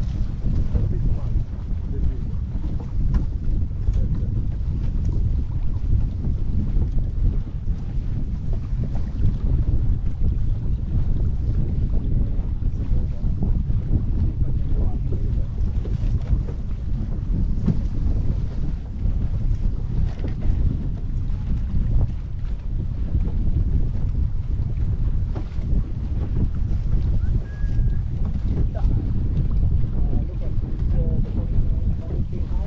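Steady low wind buffeting on the microphone, over water rushing and slapping against the hull of a small sailing dinghy under way.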